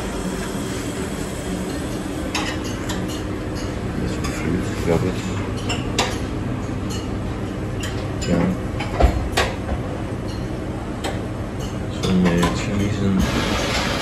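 Dishes and cutlery clinking now and then over a steady background of room noise and faint voices.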